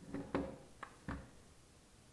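Plastic parts of a DeWalt 20V MAX drill clicking and knocking as they are handled and worked apart by hand: four sharp clicks in just over a second, the loudest about a third of a second in.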